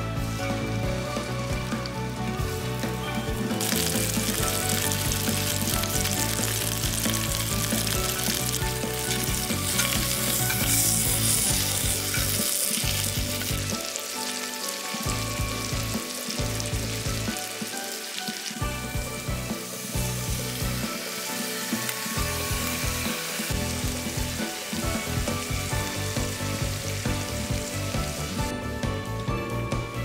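Diced beef cubes sizzling in a hot cast iron skillet over a wood fire. The sizzle grows louder about four seconds in as more meat goes into the pan, then settles to a steady fry.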